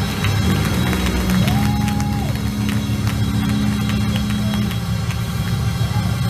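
Live gospel band music in a church sanctuary, with long sustained low chords and scattered percussive hits.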